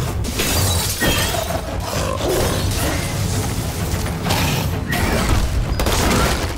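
Dense action-film sound mix: loud layered sound effects, with sharp hits scattered through it, over music.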